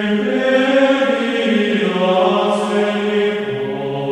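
Choral chant music: voices hold long, sustained notes that shift slowly from one pitch to the next, with a new phrase entering right at the start and a lower voice stepping down near the end.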